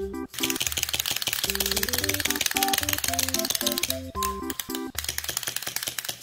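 Bouncy background music with a plucked bass line, over the rapid ticking clatter of a plastic clockwork toy's wind-up mechanism as it walks. The clicking breaks off for about a second near four seconds in, then resumes while the music plays on.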